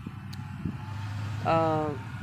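Steady low background rumble, with a man's voice speaking briefly near the end.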